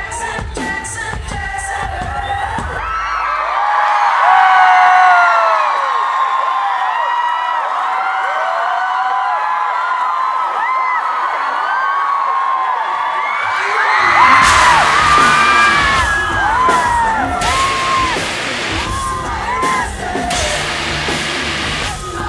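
Live rock band heard from within the audience: the music drops out about three seconds in, leaving a crowd singing and cheering, then the drums and bass come back in about fourteen seconds in with the crowd still yelling over them.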